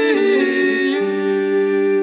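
Female vocal ensemble singing a cappella, closing on a sustained chord of several voices; about a second in a lower voice enters and the chord is held steady.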